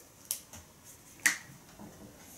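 Two sharp plastic clicks about a second apart, with a faint tick or two between them, from whiteboard markers being handled.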